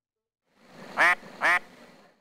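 Two short pitched calls about half a second apart, over a faint hiss.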